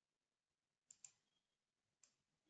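Near silence with two faint, quick clicks about a second in, from a computer mouse button.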